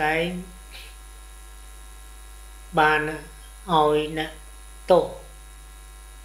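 A man speaking Khmer in short phrases with long pauses between them, over a steady low electrical mains hum that stays underneath throughout.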